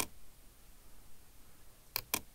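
Two sharp computer mouse clicks, one at the very start and one near the end, with faint room noise between.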